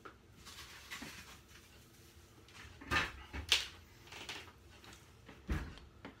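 Kitchen handling noises: a few short rustles and knocks about three to four seconds in, then a dull thump like a cupboard or door shutting.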